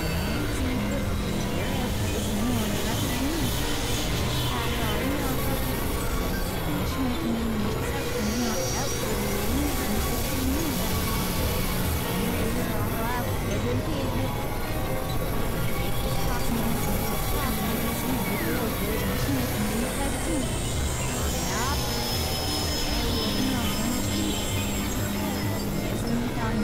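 Dense experimental electronic noise music: a steady wall of layered synthesizer drone and noise, full of rapid warbling pitch wiggles, with a low held tone coming and going and voice-like fragments blended in.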